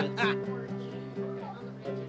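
Acoustic guitar chord ringing on and slowly fading, with a couple of light strums.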